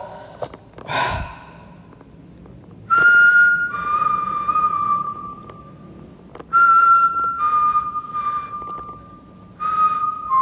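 A man whistling a short two-note phrase three times. Each time he holds a note, steps down to a slightly lower one and holds that, with breath hiss on the notes.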